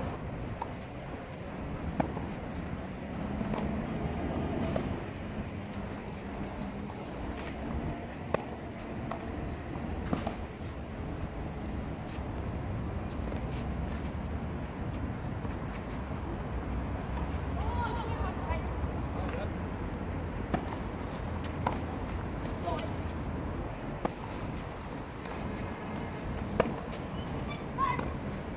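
Tennis ball struck by junior players' rackets during a rally on a clay court: single sharp pops several seconds apart over steady outdoor background noise, with faint distant voices.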